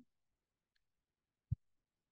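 Near silence broken by one short, low knock about a second and a half in.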